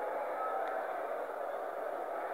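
Steady faint hiss of the recording's background noise in a pause between spoken sentences.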